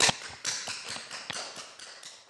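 A sharp click, then an irregular run of light taps and knocks, a few a second, fading toward the end.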